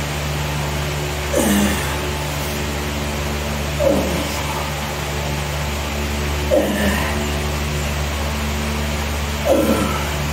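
A man's strained grunts as he curls a heavy dumbbell: four short grunts, one with each rep about every two and a half seconds, each falling in pitch. A steady motor hum runs underneath.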